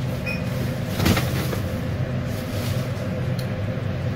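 Plastic hairdressing cape rustling and hands working through hair, a few short crinkles over a steady low background hum.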